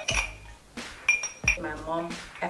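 An embossed glass tumbler clinking: a small click just after the start, then two sharper clinks with a brief bright ring about a second and a second and a half in.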